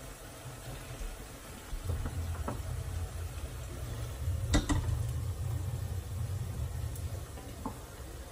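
A large metal cooking pot being moved across the stovetop to a smaller burner, with a low rumble from about two seconds in and one sharp knock about halfway through.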